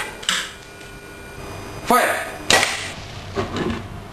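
Two sharp cracks from a homemade coilgun rifle firing, its capacitor bank discharging through the coil: one a few tenths of a second in, the other about two and a half seconds in, just after a shouted "Fire!".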